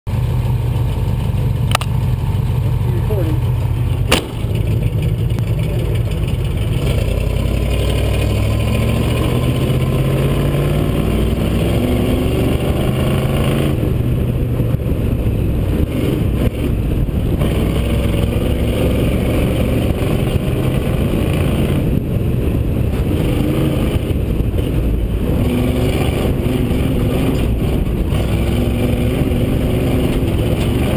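Rally car's engine running hard on a dirt stage, its note rising again and again as it accelerates through the gears, over steady wind and road noise on an outside-mounted camera. Two sharp clicks come near the start.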